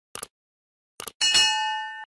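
Sound effects for a subscribe-button animation: two short clicks, then a bell ding about a second in that rings on with several steady tones and slowly fades.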